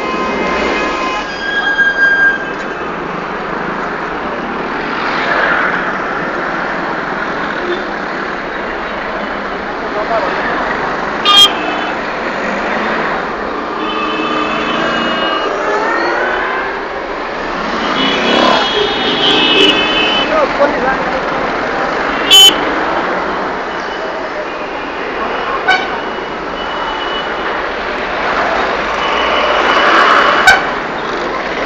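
Busy street traffic: engines and tyres running, with car and motorbike horns honking several times. Two sharp clicks or knocks stand out, about a third and two thirds of the way through.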